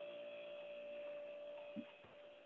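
Faint steady electrical hum with a single held tone in it, stopping near the end.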